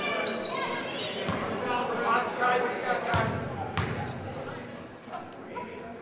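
Indistinct voices echoing in a gymnasium, with a basketball bounced on the hardwood court: two sharp bounces about three seconds in, as the free-throw shooter dribbles at the line.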